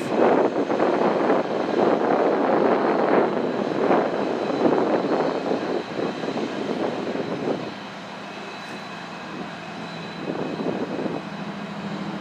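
Union Pacific 1019 diesel locomotive running its engine as it creeps through the yard. The engine is loud for the first seven or eight seconds, then drops to a quieter steady hum.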